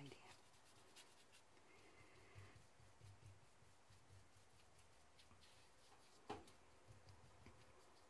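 Near silence: room tone with faint small ticks and rubbing as a paintbrush works ink onto fabric, and one sharper click about six seconds in.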